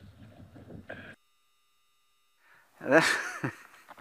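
A man laughing near the end, after faint outdoor background noise and about a second of dead silence at the feed's cut.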